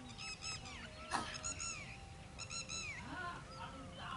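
Birds calling in three quick runs of short, high, arched notes. A single sharp crack about a second in is a cricket ball being struck, just after the bowler's delivery.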